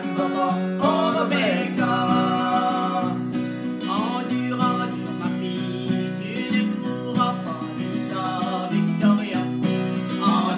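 Acoustic guitar strummed as accompaniment to a song sung in French by a woman and a man.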